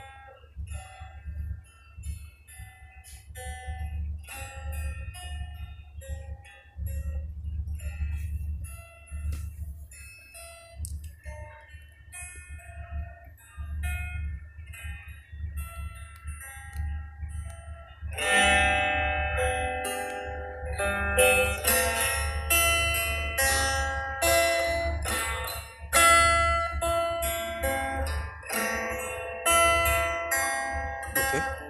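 Instrumental background music played back in an editing app: a guitar piece with light chime-like notes, sparse at first, turning fuller and louder about eighteen seconds in, over a steady low hum.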